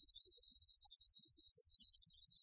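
Near silence: faint scattered noise with no clear sound event.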